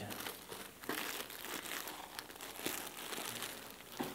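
Hands rummaging through a cardboard box of giveaway t-shirts: an irregular run of rustling and scraping as the items are pulled about.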